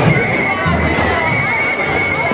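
A whistle blown in one long, steady high note, over samba-band drumming at about two beats a second and crowd chatter.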